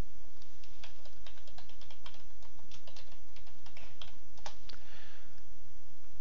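Typing on a computer keyboard: a run of irregularly spaced keystroke clicks, over a steady low hum.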